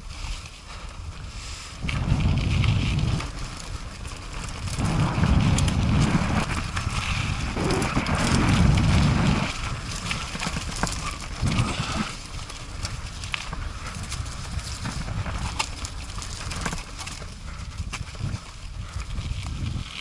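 Mountain bike rolling fast over a gravel forest trail, its tyres crunching over stones and the bike rattling and knocking. Wind rushes on the helmet-mounted camera in loud surges about two seconds in and from about five to nine seconds.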